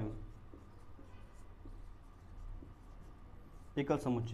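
Marker pen writing on a whiteboard: faint rubbing strokes as a word is written out by hand.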